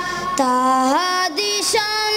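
A boy's unaccompanied voice singing a naat, holding long drawn-out notes, with a step up in pitch about a second in and a brief break before the next phrase.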